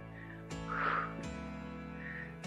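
Background music of sustained chord tones that change a couple of times, with a short, louder note about a second in.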